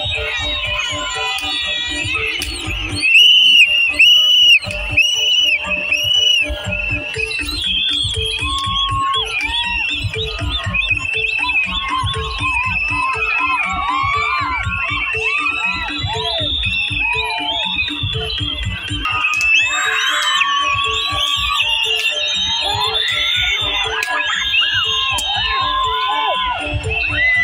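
Bantengan procession music, drums beating a steady rhythm under a shrill, wavering pitched melody, with a crowd shouting and cheering over it. It is loudest for a moment about three to five seconds in.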